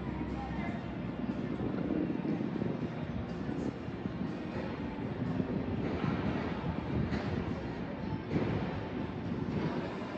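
Outdoor street ambience: a steady low rumble, with faint music and voices in the background.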